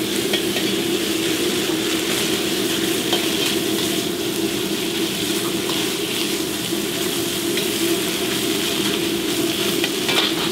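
Beef slices sizzling in hot oil in a wok over a high-flame burner, a steady, even frying noise with the burner's rush beneath it. Now and then a metal ladle ticks against the wok as the beef is stir-fried.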